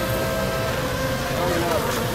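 Remote-control racing boat motor running at speed with a steady high whine, with people's voices talking underneath.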